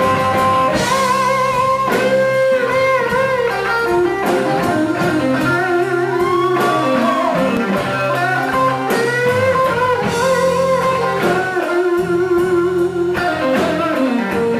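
Live blues band playing an instrumental break: a lead guitar line with notes bent up and down in pitch over bass and drums.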